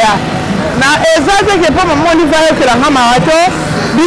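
A person talking.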